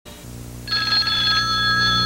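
A steady electronic chord of several high tones comes in about two-thirds of a second in, shimmering briefly at first, over a constant low hum.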